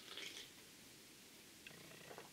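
A faint, brief sip of soda from a can in the first half-second, then near silence.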